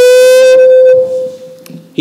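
A loud, steady howl of public-address microphone feedback, one held tone that starts suddenly, holds for about a second, then fades away.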